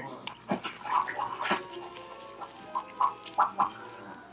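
Film soundtrack: a troll puppet creature making a string of short, animal-like noises, several in quick succession near the end, over quiet background music.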